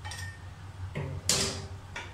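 A short sharp clatter about one and a half seconds in, with a couple of fainter clicks before it, over a steady low hum.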